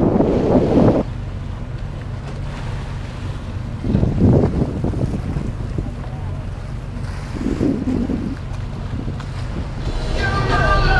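Wind blowing on the microphone over a boat moving across open water. It cuts off suddenly about a second in, leaving a quieter, steady low engine hum of a moored ferry, with two brief louder swells of noise.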